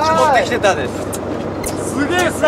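A fishing boat's engine running with a steady low drone under a haze of sea noise, after a brief excited voice near the start.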